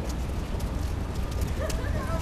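Footsteps of several people walking on stone paving, sharp clicks of hard soles over a steady low rumble, with faint voices near the end.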